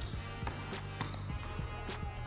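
Basketball being dribbled hard on a hardwood gym floor: several quick bounces at uneven spacing as he works the ball through a crossover move.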